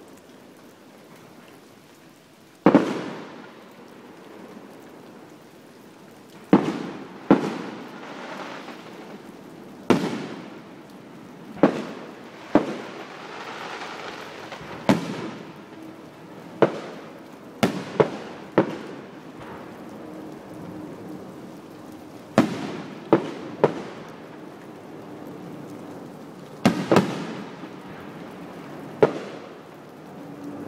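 Aerial fireworks shells bursting: about seventeen sharp bangs at irregular intervals, some in quick pairs and triplets, each trailing off in a reverberating tail.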